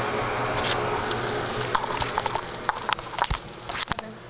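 Handling noise close to the microphone: a steady hiss, then from about halfway on a run of irregular clicks and crackly rustling as things are moved about and a towel is handled.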